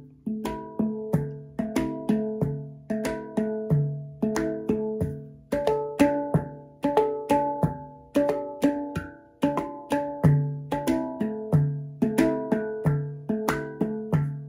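A steel handpan played with the fingertips in a steady rhythmic groove: sharp taps, several a second, each letting pitched metal notes ring briefly.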